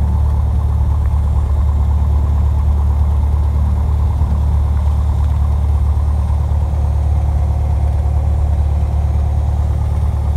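Piper Warrior's four-cylinder Lycoming engine and propeller running steadily on the ground, heard inside the cabin as an even low drone.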